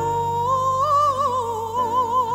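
A woman singing solo, holding one long note that rises slightly about halfway through and then takes on a wide vibrato, over low sustained accompaniment notes.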